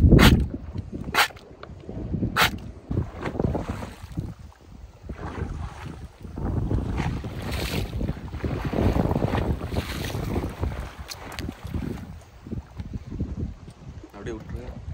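Wind buffeting the microphone over water washing against a small wooden fishing boat, with three sharp knocks in the first few seconds.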